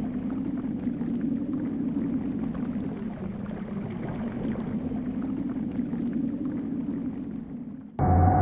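Steady underwater ambience: a low rumble with a bubbling, water-like hiss, fading slightly and cutting off at the end.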